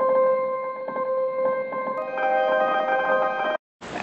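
A piano sample played as a held note through FL Studio's Fruity Granulizer with looping on, giving a sustained, pad-like granular tone. About two seconds in, higher tones join, and the sound cuts off suddenly shortly before the end.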